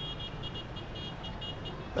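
City background sound: a steady low hum of traffic, with a rapid run of short high-pitched pips that stops near the end.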